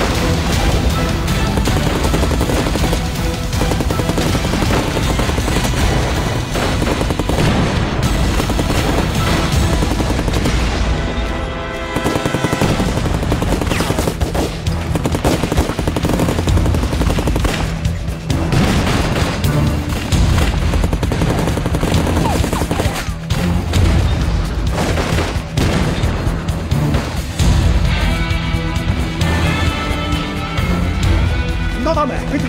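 Battle sound effects: continuous gunfire, including machine-gun bursts, and explosions, mixed with dramatic background music.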